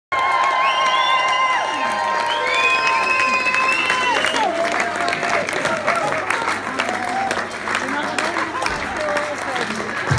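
Concert audience applauding and cheering for an encore, with several high whistles gliding up and down over the clapping during the first four seconds or so, then steady clapping with shouting voices.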